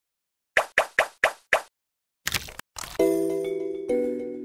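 Five quick liquid-drop plops about a quarter second apart, then a short splashing burst. About three seconds in, a steady held musical chord begins as the song's intro.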